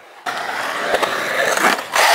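Skateboard wheels rolling and carving across a concrete bowl: a steady rolling sound that starts about a quarter second in and gets louder near the end as the board comes close.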